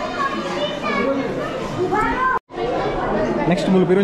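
Several people talking at once in a busy hall, speech and chatter overlapping. About two and a half seconds in, the sound cuts out for a moment and then resumes.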